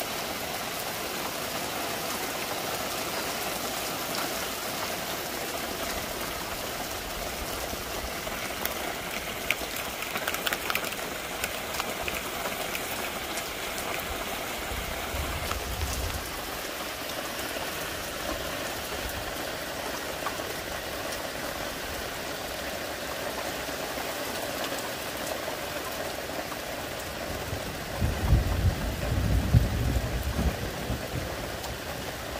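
Steady rain falling on garden trees and shrubs, an even hiss. A few low rumbles come through it, the loudest near the end.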